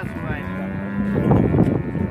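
A dairy cow mooing: one long call that swells much louder about halfway through.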